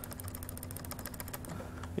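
Computer keyboard key pressed over and over: a fast, even run of faint clicks that stops about one and a half seconds in, over a steady low hum.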